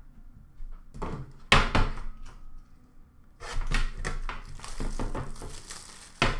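Upper Deck hockey card tin being handled: a sharp knock about a second and a half in, then a couple of seconds of clattering and rustling as the tin is picked up and opened.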